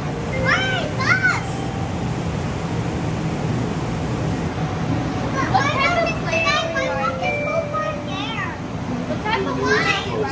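A small child's high voice making rising-and-falling cries, briefly near the start and again through the second half, over the steady low running noise of an airport people-mover train in motion.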